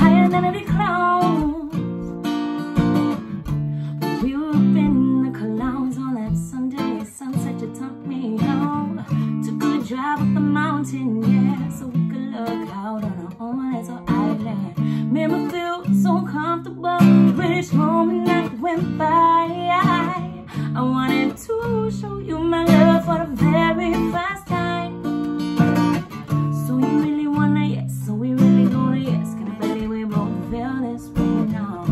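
Steel-string acoustic guitar strummed in a steady rhythm while a woman sings along.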